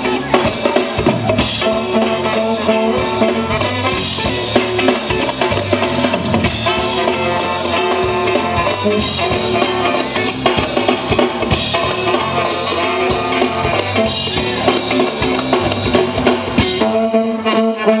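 Live funk instrumental from a horn band: trumpet and trombone playing over a drum kit and hand drums in a steady groove. Near the end the bass drops out and the band thins.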